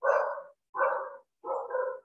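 A dog barking in the background of a video call, three or four barks spaced roughly two-thirds of a second apart.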